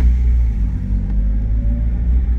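Mazda Miata's four-cylinder engine running at low revs as the car drives slowly in second gear, heard from inside the cabin as a steady low drone.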